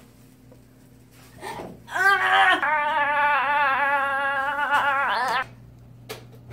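A girl's long, high-pitched laugh with a wobbling pitch, starting about two seconds in and lasting about three seconds, rising at the end. A faint steady hum runs underneath.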